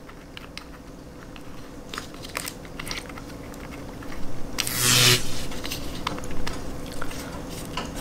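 Handheld laser pointer being screwed back together over its batteries: faint scratchy clicks and scraping of the threaded cap and fingers on the casing, with one short louder rasp about halfway through.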